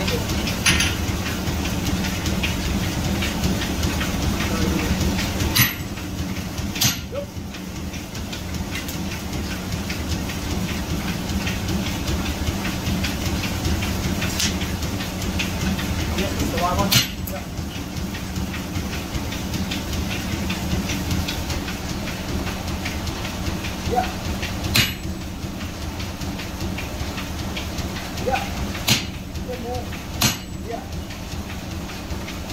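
Sledgehammer blows on a set hammer held against a red-hot malleable-iron traction engine clutch lever on an anvil, hot-straightening the bent lever. About half a dozen single sharp strikes come several seconds apart, over a steady low drone from the coal forge.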